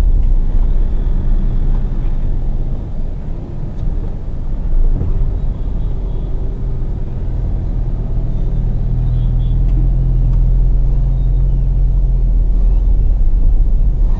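Hyundai Creta heard from inside the cabin, driving slowly over a rough dirt street: a steady low rumble of engine and tyres with a hum, dipping briefly a few seconds in.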